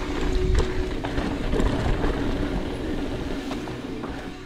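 Mountain bike rolling fast down a dirt singletrack, heard from a handlebar-mounted camera: steady wind rumble on the microphone over tyre noise, with a few sharp clicks and rattles from the bike.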